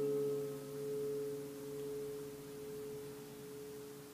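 Acoustic guitar's last strummed chord ringing out. A few steady notes slowly fade away, with a gentle waver in their loudness.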